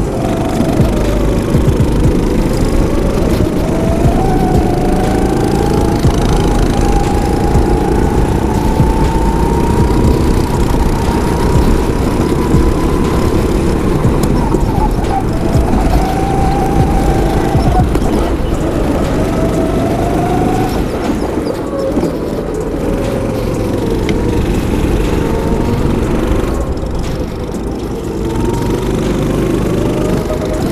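Go-kart engine heard from the driver's seat, running hard around the track, its pitch rising and falling every few seconds as it revs up on the straights and drops for the corners.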